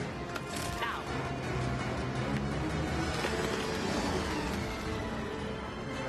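Animated sci-fi show's soundtrack: dramatic score over the rumble of a starship and spacecraft machinery.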